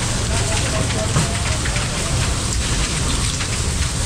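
Steady rain falling, a dense, even patter of drops.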